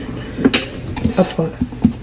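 Light plastic clacks and knocks as plastic measuring cups are set down on a metal baking tray and a plastic bottle is handled. The sharpest clack comes about half a second in, followed by a few softer ones.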